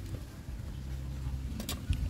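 A few faint clicks of roasted oyster shells being handled, the clearest near the end, over a steady low rumble.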